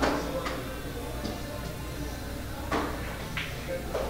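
Pool hall room sound: background music and low voices over a steady hum, with a few short sharp clicks. One click comes about half a second in, and two come about half a second apart near the end.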